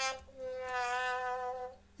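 Sad-trombone sound effect: a descending 'wah-wah-wah-waaah' whose window holds the end of the third note and the long, lower final note, held about a second and a half. It is the comic signal of a letdown: the hoped-for answer turns out to be no.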